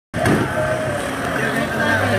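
Indistinct voices over the steady hum of a running vehicle engine.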